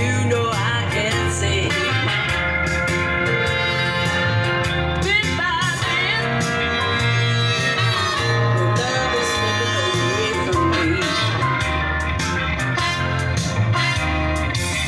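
Blues song with guitar, bass and singing, played through a car's audio system and heard inside the cabin.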